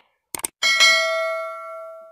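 A couple of quick clicks, then a bright bell ding that rings on and fades slowly over more than a second: the click-and-bell sound effect of a subscribe-button and notification-bell animation.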